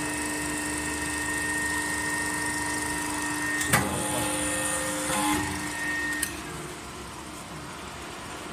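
Reducing machine running with a steady hum, a sharp metallic knock a little before halfway, and a click a little after six seconds as the hum cuts off.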